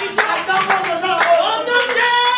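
Hands clapping in a few sharp claps, with a voice singing held notes over them.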